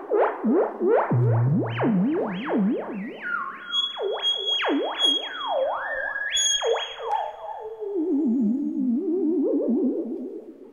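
Moog Werkstatt analog synth played theremin-style by hand over the Koma Kommander's range sensors: one tone swooping steeply up and down in quick glides. Around the middle it holds a few stepped high notes, then settles into a lower, smaller warble near the end. It runs through some added delay.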